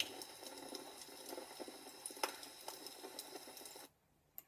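Wood fire crackling faintly: a steady hiss with scattered small pops, one sharper crack about halfway through. It cuts off suddenly just before the end.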